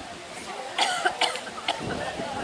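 A person coughing, three short coughs about half a second apart, over quiet chatter.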